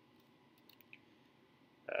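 A few faint key clicks on a computer keyboard, scattered through the first second, as a multiplication sign is typed into a Python shell.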